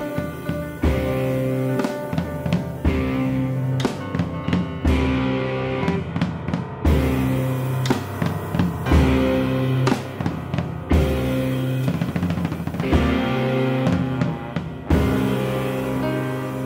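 Live band playing an instrumental passage in a rock-jazz style: drum kit, electric guitar, piano and trombone, with no vocals yet.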